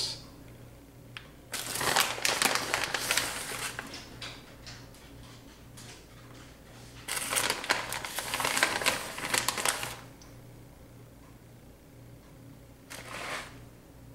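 Plastic bag of shredded mozzarella crinkling as it is handled and shaken out over the pans, in two long spells with a short one near the end. A steady low hum runs underneath.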